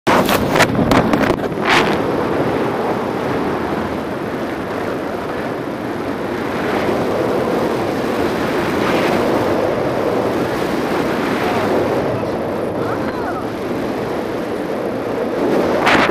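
Wind rushing over the microphone of a selfie-stick action camera in paraglider flight, a loud, steady rumbling noise. Several sharp knocks come in the first two seconds, and a louder gust hits right at the end.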